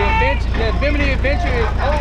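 People talking over the steady low rumble of an open-air tram's engine.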